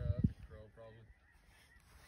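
Geese honking at a distance, a few short calls in the first second, over a low rumble of wind on the microphone.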